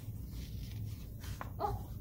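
Paper picture cards handled and flipped, faint soft rustles over a low steady hum, then a woman's drawn-out, sing-song "Oh" near the end.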